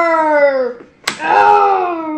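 Two long vocal cries that slide down in pitch, voicing a toy fight, with a sharp smack about a second in as the action figures clash.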